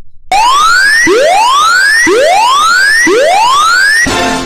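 Electronic whooping alarm siren: four rising whoops, about one a second, each climbing from low to high pitch. It is a danger alarm going off.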